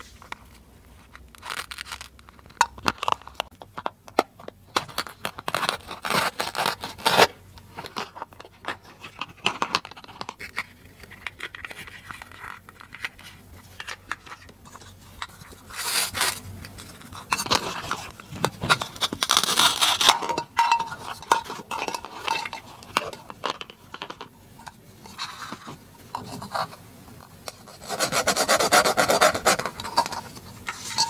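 Hard plastic toy fruit and vegetables handled on a table: scattered light plastic clicks and knocks, with several rasping rips as the Velcro-joined halves of a toy kiwi and pepper are pulled apart, the longest rips in the second half.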